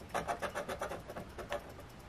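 A plastic scratcher tool rubbed quickly back and forth over a scratch-off lottery ticket, scraping off the latex coating over a number. The strokes are short and rapid, about seven a second, and stop about a second and a half in.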